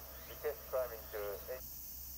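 A thin voice speaking in short syllables, with no low tones, as if heard through a small speaker; it stops about one and a half seconds in.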